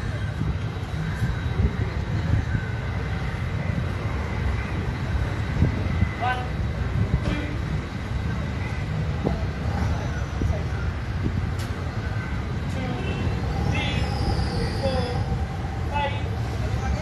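A steady low rumble of outdoor background noise, with faint scattered voices.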